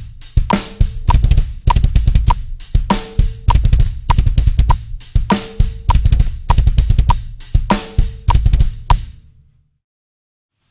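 Drum kit with double bass drums playing a halftime groove: fast double-pedal kick strokes that switch between note groupings, under cymbals and hi-hat, with a ringing snare on the backbeat about every two and a half seconds. A click ticks steadily in time throughout. The beat stops about nine seconds in and rings out.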